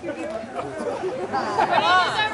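Several people's voices talking over one another, with no clear words.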